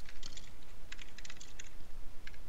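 Typing on a computer keyboard: quick runs of keystrokes with brief pauses between them.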